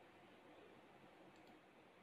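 Near silence: faint room tone with faint computer-mouse clicks about a second and a half in.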